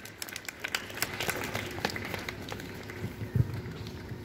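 Scattered hand claps from a group of people, dense at first and thinning out to a few separate claps.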